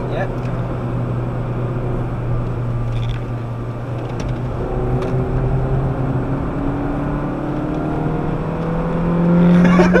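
The Citroën DS3's 1.6-litre petrol engine, heard from inside the cabin, holds a steady note through the slow corner. From about halfway it accelerates, its pitch climbing and its sound growing louder near the end, over steady road noise.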